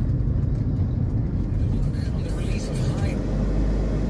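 Car cabin noise while driving: a steady low rumble of engine and road. About three seconds in it changes to a smoother, steadier low hum.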